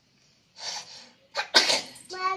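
A sneeze: a short breathy noise about half a second in, then the sharp, loud sneeze itself about a second and a half in.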